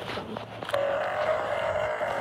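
Electronic Santa toy's speaker, still sounding while the toy burns, giving a steady buzzy electronic tone that starts just under a second in and holds to the end.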